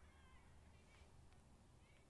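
Very faint, high-pitched whimpers from a woman starting to cry, stifled behind her hand, over near silence.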